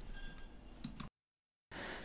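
Quiet pause with faint background hiss and a brief click just before a second in, followed by about half a second of dead silence where the audio drops out entirely.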